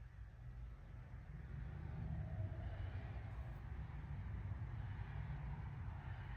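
Faint low rumble that grows a little louder about two seconds in and holds.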